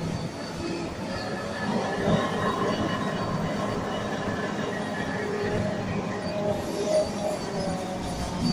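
Automatic dental bib tissue machine running: a steady mechanical din from its rollers and drives, with many short, shifting high tones.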